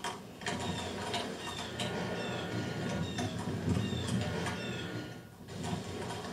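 Soundtrack of a projected two-screen video: a busy clicking, ratchet-like rattle with short high squeaks that fall in pitch, about two a second, and a brief drop-out about five seconds in.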